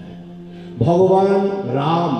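A man chanting a verse through a microphone. About a second in his voice starts a long held note and then moves on into shifting syllables.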